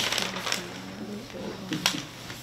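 A few sharp clicks and clinks of small objects on a tabletop, one about half a second in and one near the end, with low murmured voices in the room.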